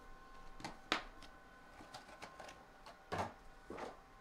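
Sealed trading card packs being set down and stacked on a wooden table: a handful of light taps and rustles, the sharpest about a second in, with two longer scuffs near the end.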